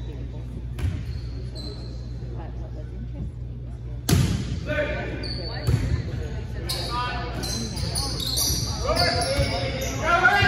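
Volleyball play in an echoing gym: a sharp hit of the ball about four seconds in, then more ball contacts as the rally goes on, with players' shouts and calls over them.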